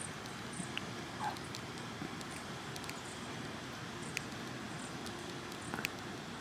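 Faint steady outdoor background with a few soft, scattered clicks from small plastic action-figure parts being handled as a wrist piece is pressed onto the figure's wrist joint.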